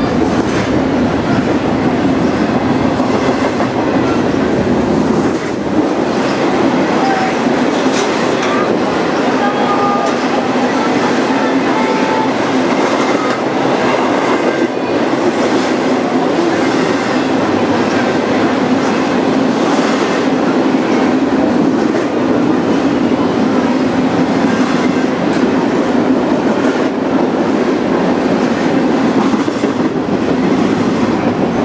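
BNSF double-stack intermodal freight train's container cars rolling past: a steady rumble of steel wheels on the rails, with repeated clicks as the wheels run over the track.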